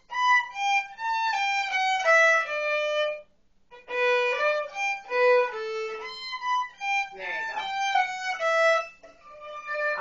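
Violin played with the bow: a phrase of notes stepping downward, a short break a little after three seconds, then a second phrase ending about a second before the end. A voice speaks briefly over the playing around seven seconds in.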